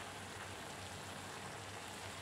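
Faint, steady hiss of potatoes and coconut cooking gently in an aluminium pan on a gas burner.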